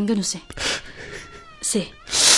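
A person's voice in short vocal sounds, not clear words, with a sharp breath about half a second in and a brief falling cry near the end.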